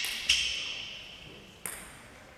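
Celluloid table-tennis ball bouncing: two sharp, high pings about a second and a half apart, each with a ringing tail that fades.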